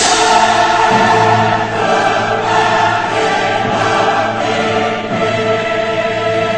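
Choral music: a choir singing held chords, coming in loudly at the very start.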